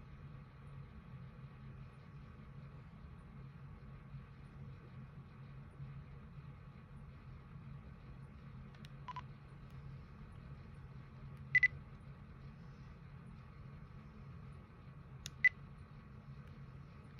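Short electronic beeps over a faint steady hum. There is a faint blip about nine seconds in, a louder double beep a few seconds later, and two quick beeps near the end.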